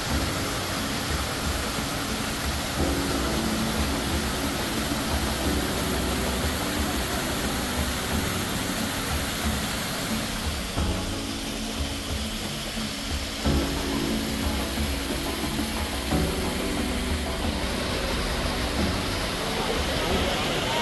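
Background music of slow, sustained chords that change every few seconds over a soft, even hiss.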